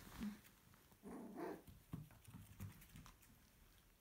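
Cocker spaniel puppies play-fighting, faint: a short puppy vocalisation of about half a second about a second in, among small scuffling clicks.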